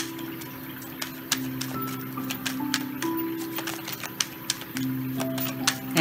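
Soft background music of slow, held notes, over irregular light clicks and snaps of a tarot deck being shuffled by hand.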